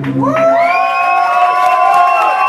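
Electric guitar with distortion and delay. A low sustained note stops about half a second in, and a high note is bent upward and held, its delay repeats layering staggered copies of the rising pitch.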